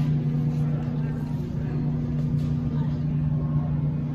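Steady low hum of a large store's background, with a rumble underneath.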